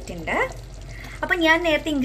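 Speech: a voice narrating, with a short pause near the middle.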